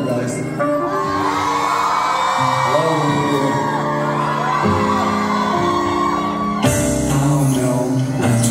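Loud live concert music: a song's intro playing through the hall's sound system, with voices singing and crowd whoops over it. The beat fills out with heavier bass near the end.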